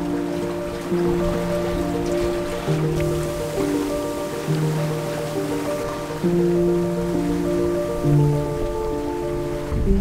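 Background music of held, sustained chords that change about every second, over a steady hiss of wind and sea.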